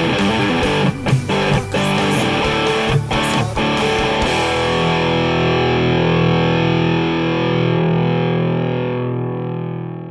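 Telecaster-style electric guitar playing a closing phrase of picked notes. About four seconds in it settles on a final chord that rings out and slowly fades away.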